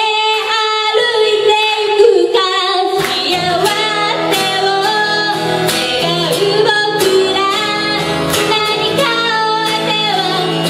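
A woman singing a melody while accompanying herself on acoustic guitar, amplified through a PA. The voice is nearly alone at first, and steady guitar strumming comes in strongly about three seconds in.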